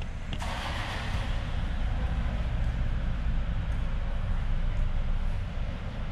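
A car passing through a concrete parking garage: tyre and engine noise comes in suddenly about half a second in and fades slowly, over a steady low rumble.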